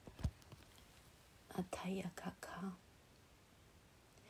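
A woman's soft, half-whispered syllables about halfway through, after a faint click near the start; otherwise quiet room tone.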